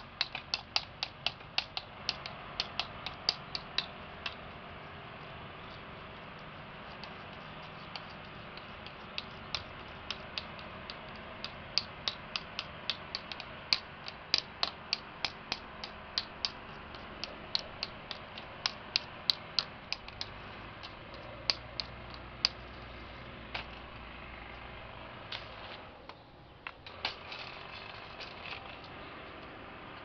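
Runs of sharp clicks, several a second, with pauses between the runs, over a steady hiss. A low rumble comes in for a few seconds past the middle.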